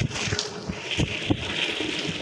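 Water pouring in a steady stream into a steel pressure cooker partly filled with a frothy blended liquid, splashing, with a few small sharp splashes along the way.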